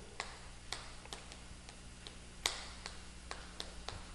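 Chalk tapping on a chalkboard while writing, heard as faint, irregular ticks, two or three a second, over a low steady hum.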